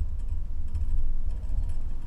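Low, uneven rumble of handling noise with faint light clicks as hackle pliers are brought to a fly-tying vise to grip a turkey biot.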